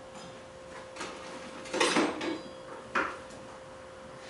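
Kitchen knife knocking on a cutting board as carrots are cut into rounds: a faint knock about a second in, a cluster of louder knocks around two seconds in, and one more at three seconds.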